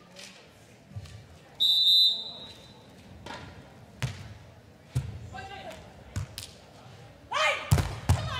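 Referee's whistle, one steady blast of about a second, then a beach volleyball being served and played, its contacts sharp knocks about a second apart in a large hall. A loud shout comes with a hit near the end.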